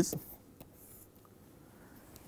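The tail of a man's word, then near quiet with a few faint taps and light scratching of a pen stylus on a writing tablet.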